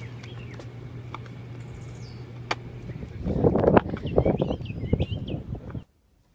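Faint bird chirps over a steady low hum. From about halfway there is a louder, irregular rustling and crunching close by, which stops suddenly just before the end.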